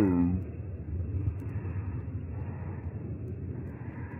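Low, uneven rumbling of wind on the microphone outdoors.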